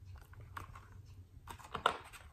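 A picture book's paper page being handled and turned: a run of papery clicks and rustles, louder and busier near the end.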